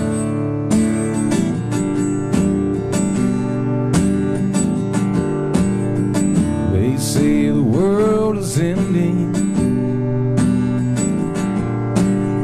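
Acoustic guitar strummed in a steady rhythm, an instrumental stretch between sung lines, with a brief vocal phrase about two thirds of the way in.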